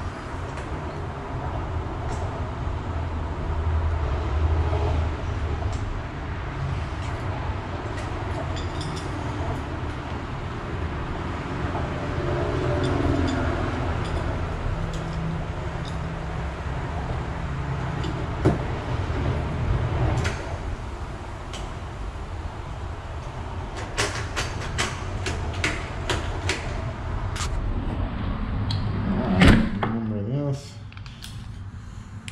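A steady low rumble throughout, with metallic clicks of keys and door lock hardware being worked. The clicks come close together in the last several seconds, and a louder knock lands near the end.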